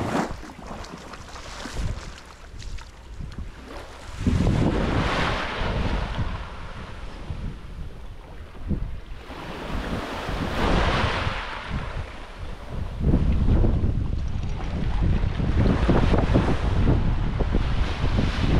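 Small waves washing up on the shore in hissing swells every few seconds, with gusts of wind rumbling on the microphone, heaviest in the second half.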